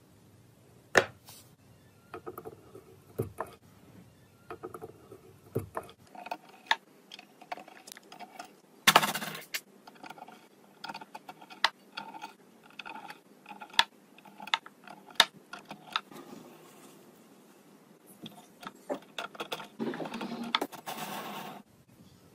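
Small clicks, taps and scrapes of 5 mm LEDs being pushed into the holes of a perforated prototyping circuit board while the board is handled. A longer scraping rustle comes about nine seconds in and again near the end.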